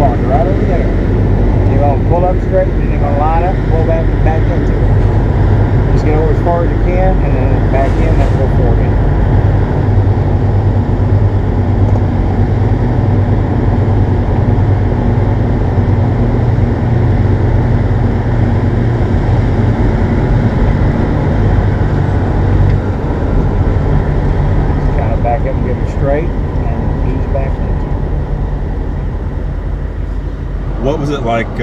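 Diesel engine of a 1986 Peterbilt 359 (Caterpillar 425B) running steadily at low speed as the truck is parked, a deep even drone that eases slightly in level near the end.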